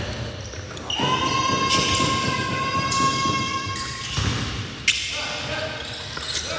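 Basketball bouncing on a gym floor around a free throw, with a sharp knock a little before the end. A steady held tone lasting about three seconds sounds from about a second in.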